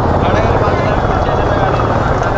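Busy street noise: a steady low rumble with voices in the background.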